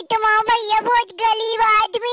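A very high-pitched voice chanting quick, sing-song syllables at a nearly steady pitch.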